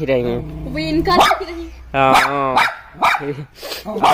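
A dog barking several times in short calls.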